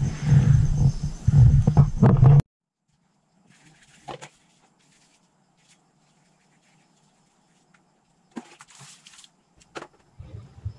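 Sandpaper scrubbed by hand over the edge of an alloy wheel rim, where the tyre bead seats, to clean and smooth it for a better seal. It cuts off abruptly about two and a half seconds in, and a few faint knocks follow.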